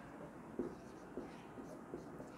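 Marker pen writing on a whiteboard: faint scratching strokes with a few light taps as the letters go down.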